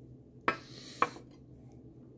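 Glass beer mug set down on a table: two sharp knocks about half a second apart.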